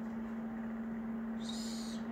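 A steady, low electrical hum on one pitch runs throughout. About one and a half seconds in there is a brief, high-pitched papery rustle of baseball cards being handled.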